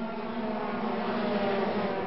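Several 125cc two-stroke racing motorcycles running hard in a close group, their engine notes steady and layered over one another at several pitches.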